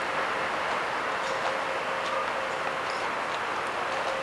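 Steady hiss of distant city traffic at night, with a faint steady hum running through it.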